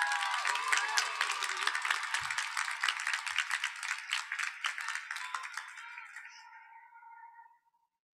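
Audience applauding, with a few cheers early on, gradually dying away near the end.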